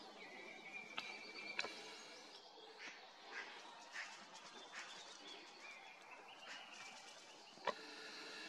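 Faint wild bird calls: a held whistle for the first second and a half, then short chirps every half second or so, with a few sharp clicks.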